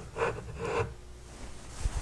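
Faint rubbing and handling sounds as a digital multimeter and its test leads are moved on a bench, with a small click near the end.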